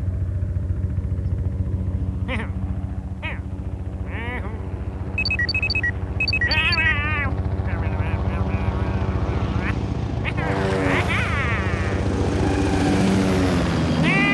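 Cartoon propeller-plane engine droning steadily. Over it come a character's wordless vocal exclamations several times, and a run of short beeps about five seconds in.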